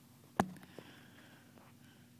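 A single sharp knock about half a second in, over a faint steady low hum.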